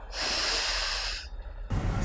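A woman's long sniff in through the nose, about a second long, acting out smelling something tasty.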